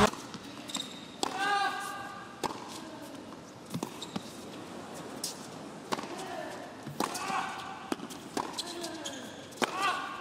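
Tennis ball being struck by rackets and bouncing on an indoor hard court, sharp knocks about a second or so apart, with a few short human cries in between.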